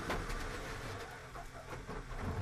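Onboard sound of a Formula 1 car at speed: the Alpine's 1.6-litre turbo-hybrid V6 engine running under a steady haze of wind and tyre noise.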